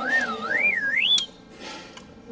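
Whistle sound effect: a single wavering tone that swoops up and down about twice a second while climbing in pitch, then cuts off suddenly about a second in.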